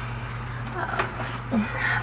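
A pause between a woman's words: steady low hum of room tone, with one faint click about a second in and a short breathy voice sound near the end.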